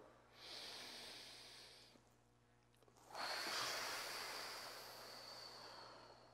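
Deep breathing: a soft inhale through the nose lasting about a second and a half, a short pause, then a longer, stronger exhale blown out through the mouth with a faint whistling note, fading away near the end.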